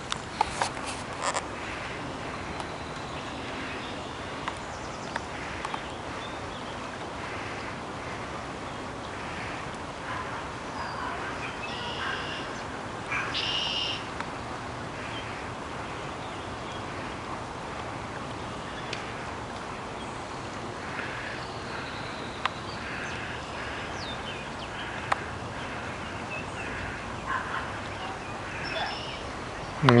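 Outdoor river ambience: a steady rush of flowing river water with birds calling now and then over it. A few sharp handling knocks come near the start.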